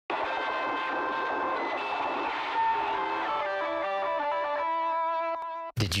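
Music: an electric guitar played through effects, with held notes ringing together in a wash that settles into a clearer set of sustained notes about halfway through, then cuts off abruptly near the end.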